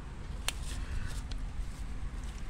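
Low, steady handling rumble from a handheld camera being moved, with one sharp click about half a second in and a few faint ticks after it.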